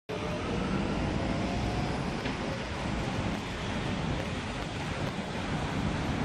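Steady outdoor city background noise: a low rumble of traffic with wind buffeting the microphone.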